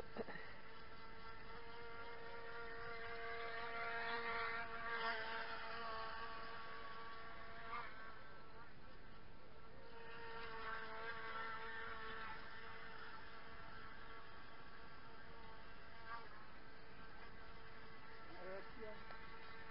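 Small model boat's motor whining with a steady, buzzing pitch, growing louder a few seconds in, fading, then swelling again about ten seconds in as the boat runs across the pond.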